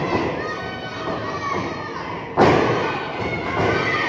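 A wrestler's strike landing on his opponent's body in the ring corner: one loud, sharp smack about two and a half seconds in, followed by a short echo. Crowd chatter and children's voices run underneath.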